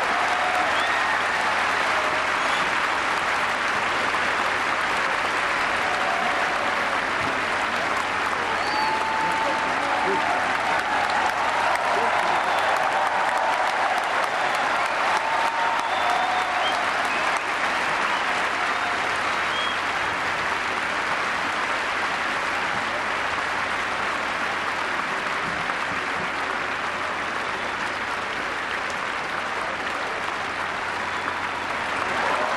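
Large stadium audience applauding steadily, with a few voices calling out in the first half; the applause eases slightly toward the end.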